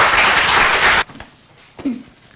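Audience applauding in a lecture hall. The applause cuts off abruptly about a second in, leaving quiet room tone.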